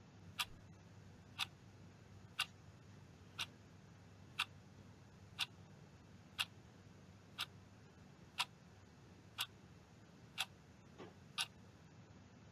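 A clock ticking steadily, one tick a second, twelve ticks in all, over a faint background hiss: a timer counting down the time given to answer the question.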